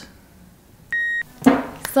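A single short electronic beep, one steady high tone lasting about a third of a second, about a second in. Near the end a loud breath comes just before speech starts again.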